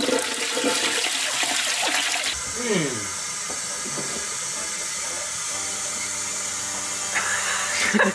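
A toilet flushing: a rush of water for the first couple of seconds, then a steadier, quieter hiss of water, with laughter over the start.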